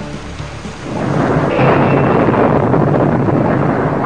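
A steady rushing noise like heavy water, swelling about a second in and then holding at a loud level.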